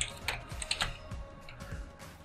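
Computer keyboard typing: a series of separate key clicks, a few per second, as a spreadsheet formula is corrected and pasted.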